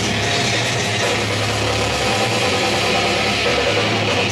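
Live death-metal/grindcore band playing loud, with heavily distorted guitars and bass in a dense, sustained wall of sound and few distinct drum hits.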